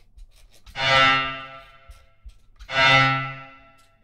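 Synthesized bowed-string tone from an Empress Zoia physical-modelling patch, in which filtered noise drives a resonator and then passes through a low-pass filter and reverb. The same note sounds twice, about two seconds apart, each swelling in, holding, and fading into a reverb tail. The reverb decay time is being turned down toward about a second.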